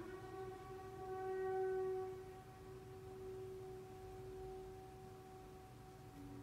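Classical opera recording playing from a vinyl LP on a turntable. A single long held note swells over the first two seconds, then holds more softly and tapers off toward the end.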